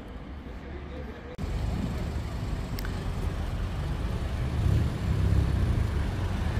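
Road traffic on a town street: cars going by, with a low, uneven rumble. The sound jumps louder about a second and a half in and grows a little toward the middle.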